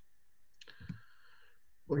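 A few faint clicks in a quiet pause over a video-call line, with a man's voice starting again at the very end.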